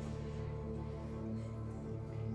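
Symphony orchestra playing classical music live, holding sustained notes with a strong low register.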